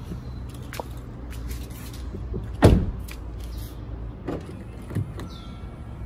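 Toyota Corolla Cross driver's door being opened as someone climbs out, then shut with one solid thump about two and a half seconds in, followed by a few lighter clicks and knocks.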